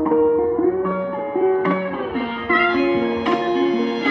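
Background music: a melody of short, distinct pitched notes, one after another, over a sustained bed of tones.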